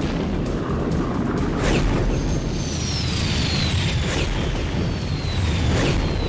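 Cartoon soundtrack of jet craft flying past: a steady low rumble with a whoosh about every two seconds and thin whistling tones falling in pitch, under background music.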